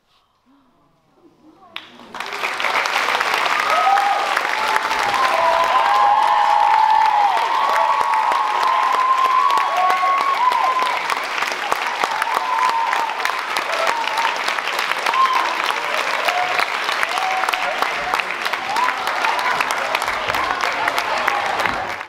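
Theatre audience applauding loudly at the curtain call, with cheers and whoops over the clapping. The applause breaks out about two seconds in and stays steady.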